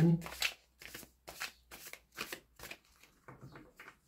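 A deck of tarot cards shuffled by hand, soft papery strokes of card on card repeating about two to three times a second.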